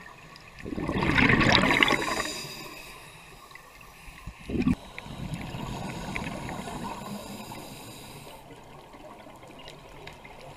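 Scuba regulator breathing heard underwater: a loud gush of exhaled bubbles about a second in, a short burst near the middle, then quieter bubbling that fades away.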